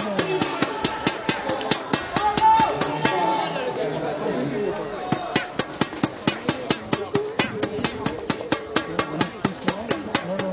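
A steady beat of sharp knocks, about three a second, with people talking and chattering over it.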